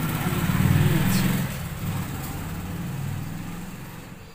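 A motor vehicle engine running past, swelling about a second in and then fading.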